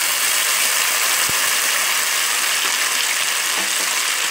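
Chopped tomatoes and sliced onions sizzling steadily in hot oil in a pan, with one light knock about a second in.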